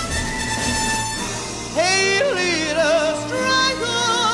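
A female jazz singer's wordless vocal line over a symphony orchestra. It enters loudly about two seconds in with swooping slides between notes, then holds notes with a wide vibrato.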